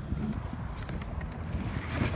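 Wind buffeting the microphone, a steady low rumble and hiss. There is a brief sharp click right at the start.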